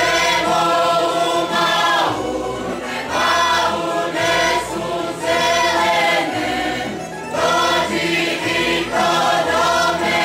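Mixed group of voices singing a Croatian folk song in chorus, in short phrases, over a tamburica band with a double bass.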